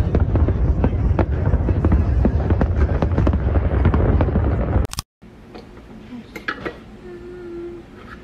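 Fireworks display: dense crackling with many sharp pops over a continuous low rumble of explosions. It cuts off abruptly about five seconds in, leaving a much quieter room sound with a few faint clicks.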